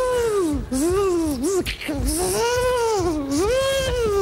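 A high-pitched voice wailing in a run of about five long cries, each rising and then falling in pitch, in a comic chase as someone is pursued.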